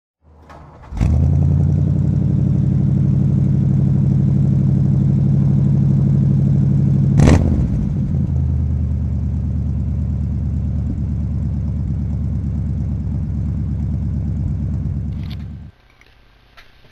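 An engine running at a steady fast idle. It catches abruptly about a second in, gives one sharp crack about seven seconds in, runs on slightly quieter, and cuts off suddenly near the end.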